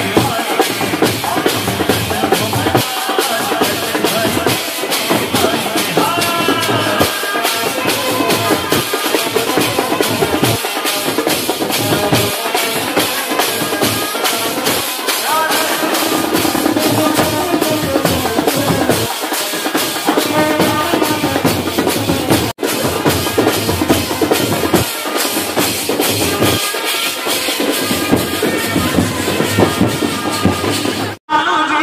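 Procession band music with a steady, driving drum beat and a melody over it. The sound drops out for an instant a little past two-thirds of the way through.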